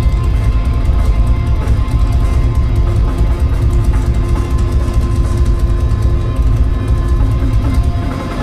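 Live heavy rock band playing loud: distorted electric guitar over a drum kit with busy cymbals, with a heavy, boomy low end.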